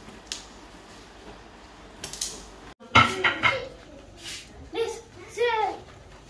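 A few light clinks and taps of a glass serving dish as green chillies are laid on the pulao, then, after a sudden break, louder voices with rising and falling pitch.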